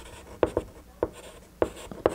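Chalk writing on a blackboard: about five sharp taps of the chalk with short scratches between them as letters are written.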